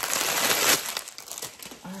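Small plastic bags of diamond-painting drills crinkling as a stack of them is handled, loudest in the first second, then lighter rustling.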